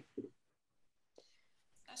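Near silence: room tone, with a brief murmur of voice just after the start and a faint click a little past the middle.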